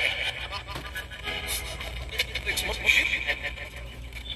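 Poltercom spirit box sweeping radio stations, giving out short chopped fragments of broadcast voices and static, over a steady low rumble.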